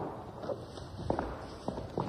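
Irregular light clicks and knocks, a few a second, from chess pieces being set down on boards and footsteps on the floor of a crowded hall, over low room noise.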